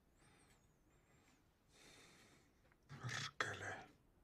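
Quiet room tone with a soft breath about two seconds in, then a man's short spoken curse about three seconds in.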